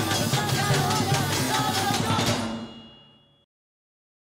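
Women's chorus singing over rapid, dense percussive strikes. The music fades out from about two and a half seconds in and is gone by three and a half seconds.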